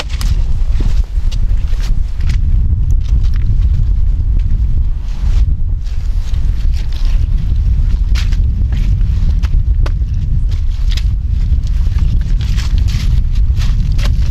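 Heavy, steady low rumble of wind buffeting the microphone, with scattered short clicks and crunches of boots on loose beach cobbles as a log is carried over the stones.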